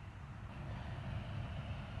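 Steady low rumble of distant road traffic, swelling slightly and gaining a faint hiss as it goes on.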